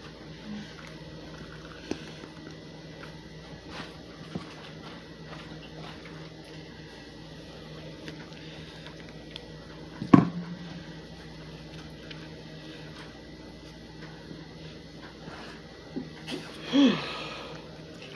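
Quiet kitchen room tone with a steady faint hum and small handling clicks as cabbage rolls are made by hand. One sharp knock about ten seconds in, and a brief vocal sound near the end.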